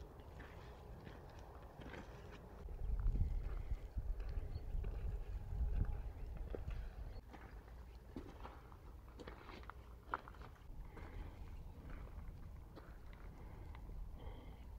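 Footsteps on gravel and stony ground, a scatter of light crunches and clicks, under a low rumble that swells from about three to six and a half seconds in.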